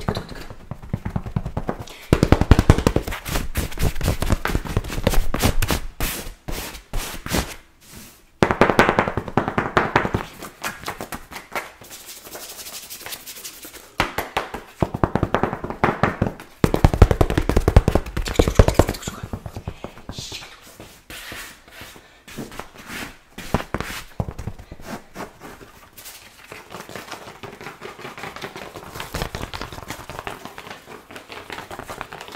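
Rapid ASMR 'chopping' taps: two handheld tools struck fast and repeatedly on a knit blanket over a pillow, in runs of quick strikes a few seconds long broken by short pauses. The strikes grow sparser and quieter in the last several seconds.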